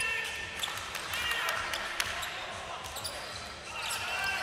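Basketball dribbled on a hardwood court, a few sharp bounces over a low hubbub of voices in the arena.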